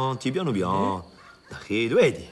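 A man's voice giving directions in drawn-out, sing-song syllables, its pitch sliding up and down.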